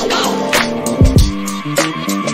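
Hip hop music: a beat with deep kick drums that drop in pitch, two close together about a second in, sharp snare hits and a held bassline.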